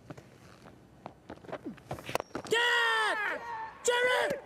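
Cricket bat striking the ball about two seconds in, followed by a long, high shout from a player on the field, falling in pitch at its end, and a second shorter shout near the end, as the ball goes up toward a fielder.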